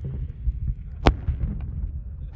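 A steady low rumble, like wind on the microphone, in the seconds after an AT4 rocket launcher shot, with one sharp crack about a second in.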